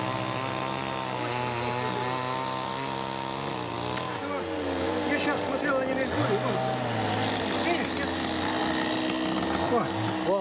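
A small engine running with a steady, even hum, whose pitch drops and fades about four seconds in, then picks up again more faintly.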